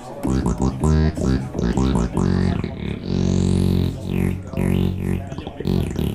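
Yamaha Montage synthesizer playing a TB-303-style squelchy acid bass line, its sound stepped by the motion sequencer. A quick run of short notes gives way to longer held notes, with a rising sweep in the top end about three seconds in.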